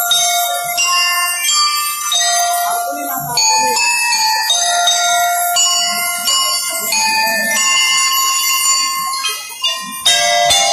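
Bell lyres of a school drum and lyre corps playing a melody of held, ringing metal notes, one after another.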